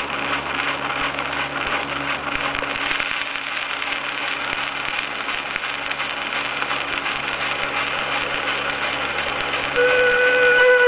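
Edison Blue Amberol cylinder playing its lead-in on an Amberola 30 phonograph: steady surface crackle and hiss with fine ticks and a faint low hum. Near the end the recording's orchestra comes in with sustained notes.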